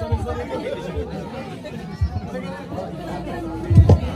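People in the audience chatting among themselves in a room, with a few short dull thumps.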